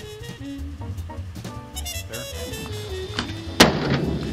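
Background music, with a van door of a 1957 Volkswagen Type 2 transporter shut once near the end: a single loud, solid thunk with a short ring.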